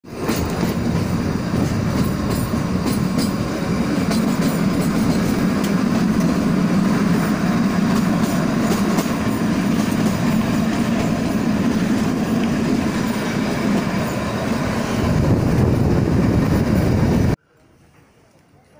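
Shimla narrow-gauge toy train running, heard from an open carriage window: a steady rumble of wheels on the rails, with repeated clicks over the rail joints. It cuts off suddenly near the end.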